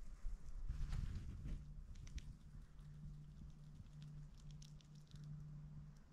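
Faint scattered light clicks and rustles over a low hum that breaks off briefly several times.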